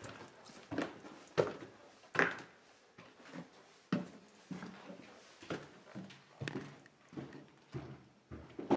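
Footsteps on old wooden stairs, a steady run of knocks a little more than one step a second apart, going on as the walker reaches the landing.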